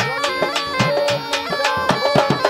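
Traditional folk music: a reed wind instrument plays a melody over a steady drone, with quick hand-drum strokes whose low notes bend in pitch.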